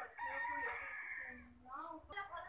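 A rooster crowing once, one long call lasting about a second and a half.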